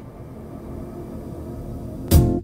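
A quiet lull of steady low rumble with a few faint sustained low tones.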